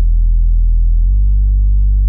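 Dry Serum sub-bass synth made of two triangle-wave oscillators, the second an octave higher, low-pass filtered so only the low end is left. It plays a loud, sustained low note that steps slightly up in pitch about a second in.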